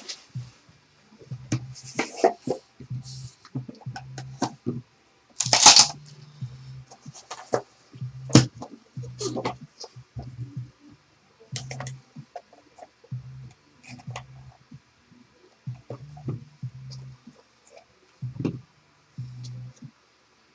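Hands handling a trading-card box and its card pack: irregular rustles, taps and cardboard scrapes, with one louder rustling burst about six seconds in. A low hum comes and goes underneath.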